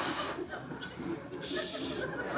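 A man's put-on snoring while feigning sleep: two hissing exhales, one at the start and one near the end.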